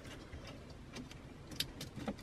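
Faint handling of plastic wiring-harness connectors: a few small, sharp clicks and light rustling as a connector is pushed into the harness plug, the clearest clicks in the second half.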